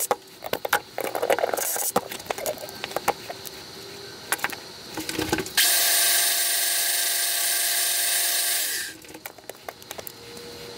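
Small tools and knife parts clicking and knocking as they are handled on a workbench. About five and a half seconds in, a cordless drill runs steadily with a high whine for about three seconds, then cuts off sharply.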